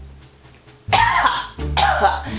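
A woman coughing twice, in two loud, sudden bursts starting about a second in. She is reacting to the strong menthol smell of Icy Hot that she has just opened, which she calls "stinks."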